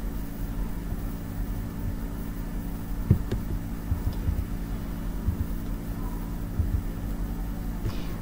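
Steady low electrical hum with a faint rumble underneath, and a few soft short clicks about three seconds in and again later.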